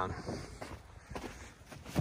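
Footsteps crunching and scuffing in deep snow.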